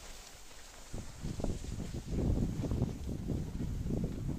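Wind buffeting a moving microphone while skiing downhill: a gusty low rumble that sets in about a second in and stays uneven.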